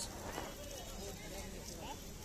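Faint street ambience: a low steady background hum with brief snatches of distant voices.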